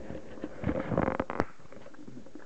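Close handling rustle with several small clicks and a sharp plastic snap about one and a half seconds in: a plastic breakaway lanyard clasp being pulled apart.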